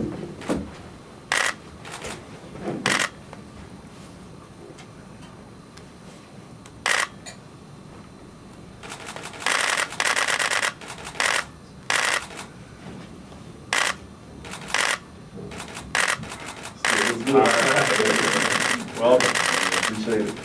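Press photographers' camera shutters clicking: single frames at first, then rapid bursts of continuous shooting about ten seconds in and again near the end.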